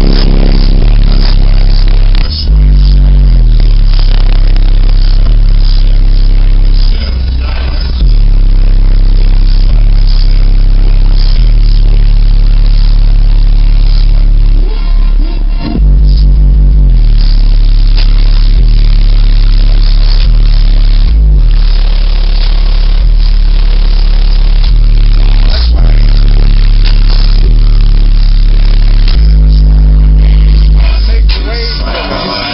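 Slowed, bass-heavy music played very loud through a truck's car-audio subwoofer system, the amplifier running on 12 volts; deep bass notes change every few seconds and overload the recording, with a few brief drops in level.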